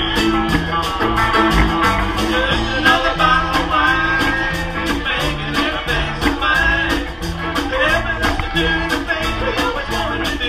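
A country band playing live, with guitar over a bass line and a steady beat.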